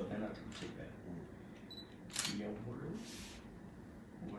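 Men's voices in quiet conversation, faint and indistinct, with a couple of short hissing sounds about two and three seconds in.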